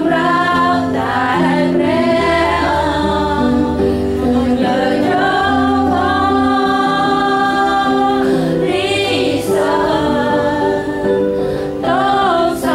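Voices singing a Khmer-language Christian worship song over sustained instrumental chords.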